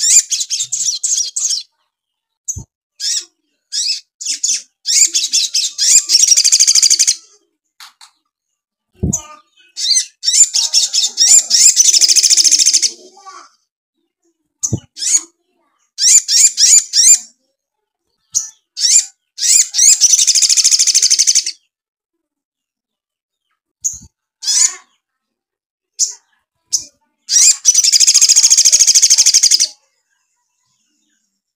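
Male olive-backed sunbird singing loud, high-pitched bursts of rapid song. About four long phrases, each a second or two, are separated by shorter chips and pauses. Its song is filled with house-sparrow phrases (isian gereja).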